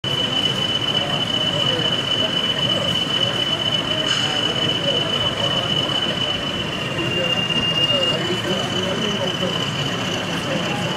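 A OO gauge model diesel locomotive running slowly on the layout, with a steady high-pitched whine that dips a little in pitch for about a second late on, over the murmur of a crowd of exhibition visitors talking.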